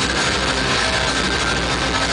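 Hardcore band playing live, loud, with distorted electric guitars.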